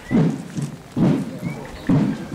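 A man's voice in three short, breathy bursts about a second apart, without words.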